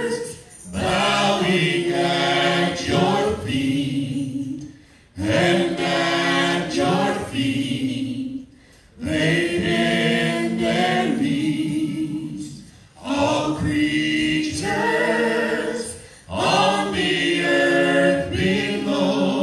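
Worship singers, several voices together, singing a worship song in phrases a few seconds long, with short breaks between the phrases.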